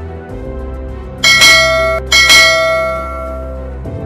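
Two bright bell chimes about a second apart, each ringing on and fading, over a steady background music bed: the end screen's notification-bell sound effect.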